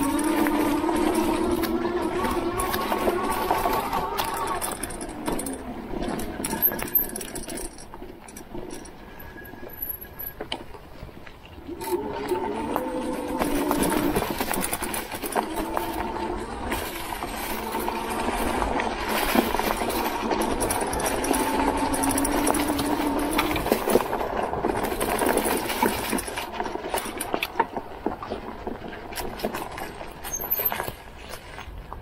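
E-bike drive motor whining under power, its pitch rising and falling with speed, dropping away for about five seconds near the middle before picking up again. Tyres crunch over dry leaves and twigs with scattered small knocks.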